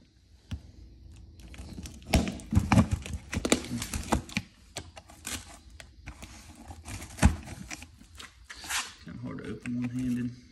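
A cardboard box being handled and opened: sharp knocks and clacks, with scraping, tearing and crinkling of cardboard and packing. The knocks come thickest a couple of seconds in, and one more sharp knock follows later.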